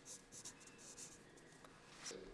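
Faint scratching of a black marker pen being drawn in short strokes across a fabric football shirt as it is signed.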